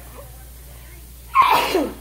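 A baby sneezing once, a short sharp sneeze about one and a half seconds in.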